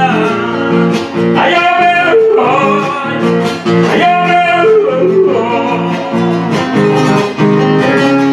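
Male singer with wavering, yodel-like vocal lines over an acoustic guitar in live folk music. Near the end the singing gives way to the guitar.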